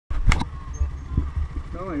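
Low pulsing rumble of wind and road noise on the microphone of a camera riding on a moving vehicle, with a sharp knock about a third of a second in.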